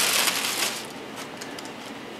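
Tissue paper rustling and crinkling as it is lifted out of a shoe box, loudest in the first second, then dying down to a few soft crinkles.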